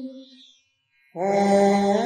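A voice chanting a Sanskrit mantra. A held chanted note fades out in the first half second, and after a short pause a new held phrase begins just past halfway, stepping up in pitch near the end.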